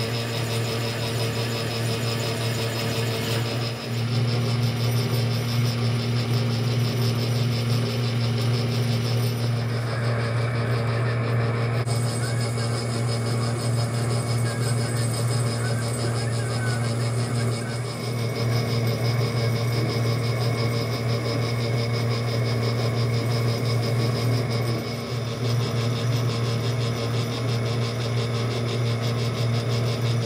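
Metal lathe running steadily with a low motor hum while a beech-wood barrel on a steel arbor is turned to diameter and the arbor's pivots are then filed as it spins. The sound shifts abruptly several times.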